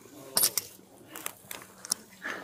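Handling noise: a few sharp clinks, two about half a second in and a quick pair near the end, over faint rustling.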